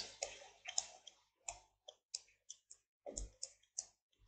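Faint, irregular clicks and taps of a stylus on a drawing tablet as an equation is handwritten, about a dozen short ticks in all, with a small cluster a little after three seconds.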